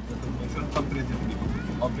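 Steady low drone of a BMW 120d's N47 four-cylinder diesel and road noise, heard from inside the cabin while driving.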